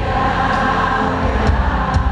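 A large congregation singing a worship song together with amplified music, with a few sharp beats.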